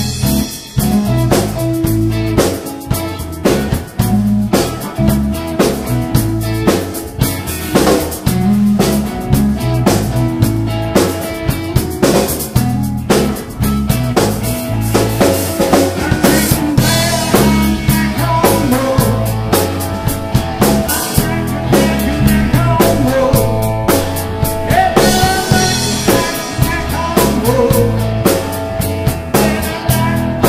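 A small band playing live in a cramped rehearsal room: drum kit keeping a steady beat with guitar and bass lines, no vocals.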